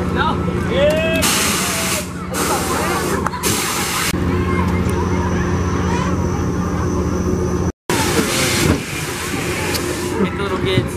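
Fairground ride machinery running with a steady low hum, broken by loud bursts of air hissing: three in quick succession in the first half and one more later, just after a brief drop in the sound.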